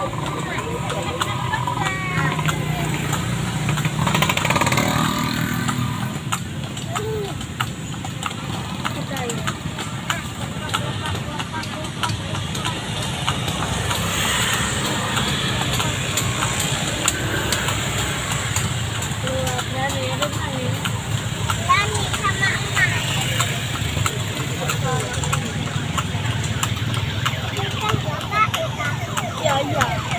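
Ride in a horse-drawn cart through street traffic: a steady background of motorcycle and car engines, with many small clicks and knocks from the moving cart and the horse's hooves, and voices now and then.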